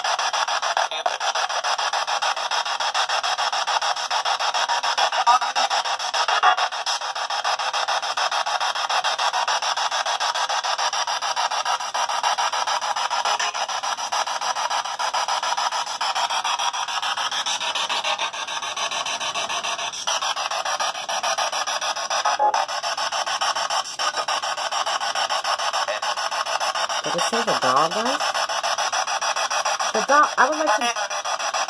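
Spirit box sweeping radio frequencies: a continuous harsh hiss of static broken by brief chopped snatches of radio sound, one of which is taken for a man's voice saying "can you". A short gliding, pitched snatch comes near the end.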